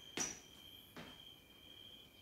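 Two footfalls as walking lunges step forward on a gym floor: a sharp one about a fifth of a second in and a softer one about a second in. A faint, steady high-pitched whine runs throughout.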